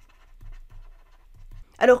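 Faint breathing close to the microphone in a quiet pause, then a voice says one word near the end.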